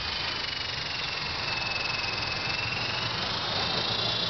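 Twin brushless motors and coaxial rotors of an E-sky Big Lama RC helicopter running in flight: a steady high whine whose pitch sags a little and comes back up.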